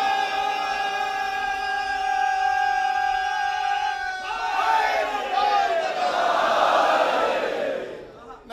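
A crowd of worshippers shouting a religious slogan (nara). One long held call runs for about four seconds, then a mass of voices answers with falling shouts.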